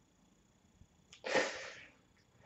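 A person sneezes once, sharply, about a second into an otherwise quiet room.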